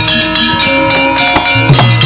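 Javanese gamelan playing: bronze metallophones and gongs ring in steady sustained tones over struck percussion. A low hand-drum stroke that drops in pitch comes near the end.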